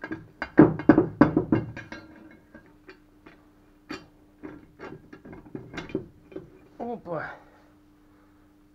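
Metal parts of a Tohatsu-type 9.8 hp outboard gearcase knocking and clicking as the housing is handled and the vertical shaft is fitted during reassembly. There is a quick cluster of knocks in the first two seconds, then scattered single clicks, over a faint steady hum.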